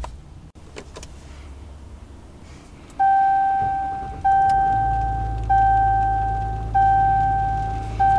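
Dashboard warning chime of a 2023 Ram 1500 EcoDiesel, heard inside the cab: a single-pitched bong, sharp at the start and fading, that sounds five times about every 1¼ seconds. Soon after the chiming begins, the 3.0-litre turbodiesel V6 starts and settles into a low, steady idle beneath it.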